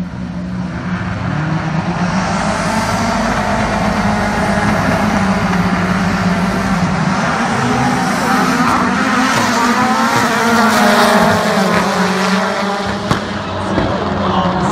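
Several rallycross race car engines revving together. The sound builds over several seconds, with overlapping engine notes rising and falling, and there is a single sharp pop about a second before the end.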